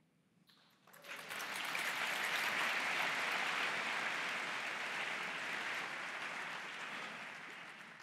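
Audience applause, starting about a second in after a brief silence, swelling, then slowly dying away.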